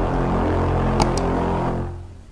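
Logo-intro music: a dense, sustained low drone that fades near the end, with two quick mouse-click sound effects about a second in as the subscribe button is pressed.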